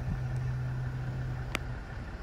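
A car engine idling with a steady low hum that cuts out near the end, and one sharp click about one and a half seconds in.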